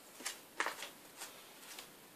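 Faint rustling and a few light taps as vinyl LP sleeves in plastic outer sleeves are handled and the next record is pulled out.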